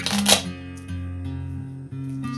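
Velcro closure on a fly-reel case ripped open: one short tearing burst in the first half second. Acoustic guitar music plays underneath.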